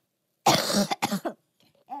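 A woman coughing twice in quick succession, about half a second in: a longer first cough, then a shorter second one.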